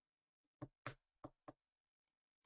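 Four quick taps, roughly a third of a second apart, starting about half a second in: a tapping sound effect for fingers tapping on a phone screen.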